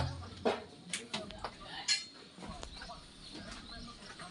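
Split-bamboo slat floor clicking underfoot: a handful of short, sharp, irregular clicks as it is walked on.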